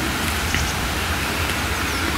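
Wind buffeting the microphone outdoors, a steady rumbling hiss with no clear events in it.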